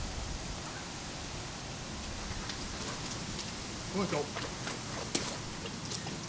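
Steady hiss of a lawn sprinkler spraying water, with a single sharp click a little after five seconds in.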